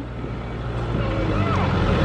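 Caterpillar compact wheel loader's diesel engine running with a steady low drone.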